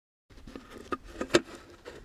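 Hands handling a small can close to a lapel microphone: rustling and scraping with several sharp clicks, the loudest a little over a second in. It starts suddenly a moment in, after silence.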